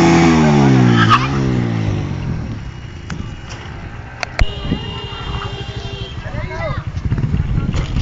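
CBZ 150 motorcycle's single-cylinder engine, its pitch falling steadily over about two seconds as the revs drop, then running lower. There are a few sharp clicks midway and a laugh at the start.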